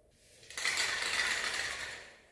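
Aerosol spray-paint can hissing as paint is sprayed onto a canvas: one continuous spray starts about half a second in and trails off near the end.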